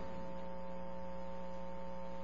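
Steady electrical mains hum, several even tones held at a constant level, with a faint hiss underneath.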